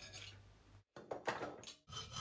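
A few faint hacksaw strokes through 4 mm aluminium plate gripped in a vise, broken by two short moments of silence.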